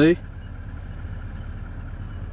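Car engine idling, heard from inside the cabin as a steady low hum with a faint thin high tone above it.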